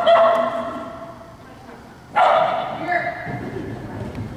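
A small agility dog giving high-pitched, drawn-out barks while running the course: one at the start, and another about two seconds in.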